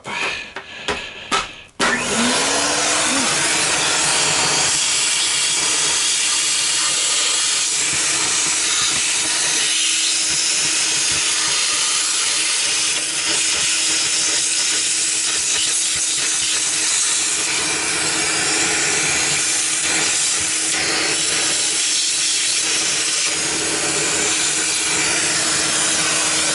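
Vacuum cleaner starting about two seconds in, then running steadily with a constant hum, its hose and narrow crevice tool sucking dust out of a desktop computer case.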